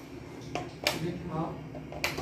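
Two sharp clicks of buttons being pressed, about a third of a second apart, while trying to switch on the room's TV, over a steady low electrical hum. A brief faint murmur of voice comes after them.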